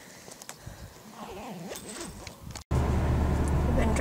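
Faint outdoor sounds at first; about two and a half seconds in, a sudden cut brings in the steady low rumble of a car driving, engine and road noise heard from inside the cabin.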